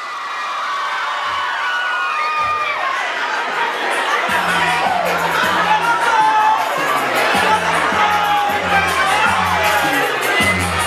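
A large crowd cheering and shouting, many voices at once. A music track's repeating bass line comes in about four seconds in.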